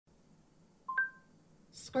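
A short electronic beep about a second in: a lower tone, then a higher tone joining it with a click, both dying away within half a second. A voice starts speaking near the end.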